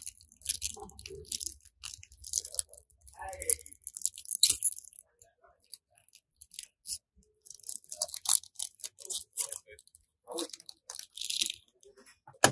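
Crinkling and tearing of a 120 film roll's foil wrapper, in irregular crackly bursts with a short lull around the middle.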